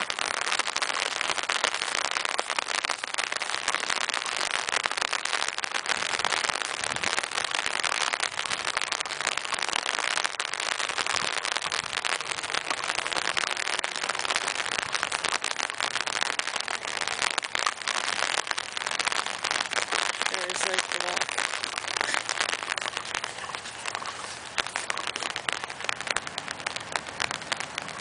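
Rain falling on an umbrella held just overhead: a steady, dense crackle of many small drop impacts that keeps up at an even level.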